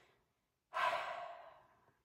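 A woman's sigh: one breathy exhale that starts sharply under a second in and fades away over about a second.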